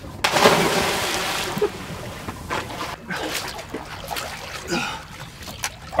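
A person falling backward off a boat into the sea: one big splash about a quarter second in, followed by water rushing and sloshing for over a second before it fades.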